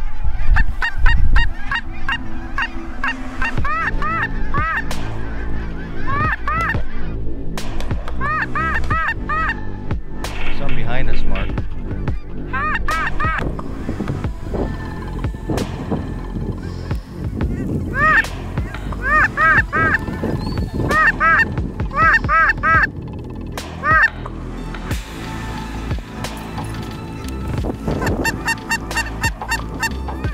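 A flock of cackling geese calling overhead: many short, high honks in repeated bursts, with soft background music beneath.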